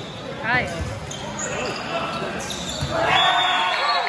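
Indoor volleyball rally echoing in a large gym: ball contacts and a sneaker squeak on the court floor, with players' voices that swell into louder shouting about three seconds in.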